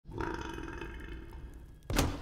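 One long, steady-pitched vocal sound from an animated character, held for nearly two seconds, then a sudden thump right at the end.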